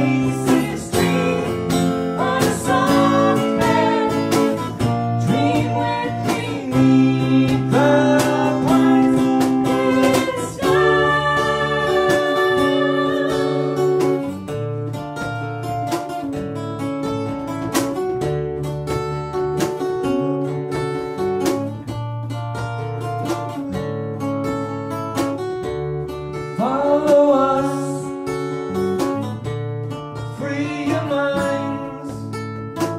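Live band playing a folk-rock song: acoustic guitar strumming over a steady electric bass line, with a woman singing into a microphone in several sung phrases between instrumental stretches.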